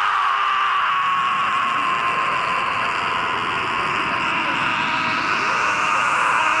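A steady, rushing sound effect from an animated action scene, holding one level after a sudden falling sweep just before, and shifting slightly near the end.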